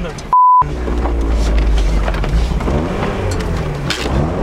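A censor bleep near the start: a steady 1 kHz tone, about a third of a second long, that replaces a spoken word. It is followed by a low, steady rumble heard from inside the car, with brief voice sounds a little before the end.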